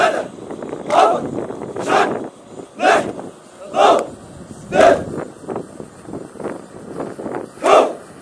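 A marching formation of soldiers shouting in unison, one short loud chant about once a second in step with the march. The shouts are weaker for a couple of seconds in the second half, then come back strongly near the end.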